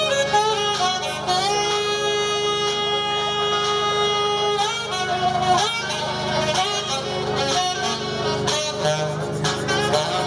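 Live saxophone played over backing music: one long held note from about a second in to nearly five seconds, then a run of shorter notes.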